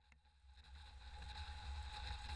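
Faint driving noise of a 4x4 on a sealed road, heard from a camera mounted on the vehicle: a steady low rumble with a hiss of wind and tyres, fading in from silence and growing louder.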